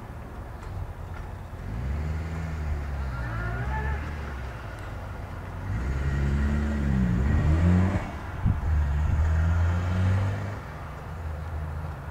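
Cessna 404 Titan's twin piston engines running at taxi power, swelling and fading with pitch that rises and falls as power is changed, loudest in two spells: a short one about two seconds in and a longer one from the middle until near the end.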